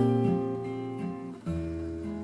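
Acoustic guitar playing in an instrumental gap between sung lines of a song. A chord strummed at the start rings and fades, and a second chord with a low bass note comes in about halfway through.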